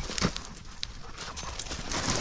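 Boots crunching through snow and dry brush, with a sharper step about a quarter second in followed by softer footfalls and the rustle of twigs.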